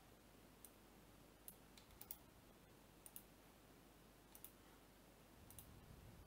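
Near silence, with about ten faint, sharp clicks scattered through it, several of them in quick pairs.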